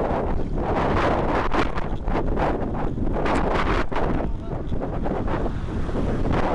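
Wind buffeting the microphone of a camera on a road bike's handlebars while riding: a loud, gusty rush.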